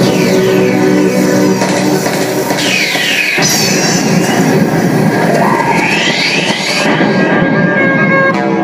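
Loud amplified music from a dhol group's live stage performance, dense and continuous. Whooshing sweeps rise and fall over it in the middle.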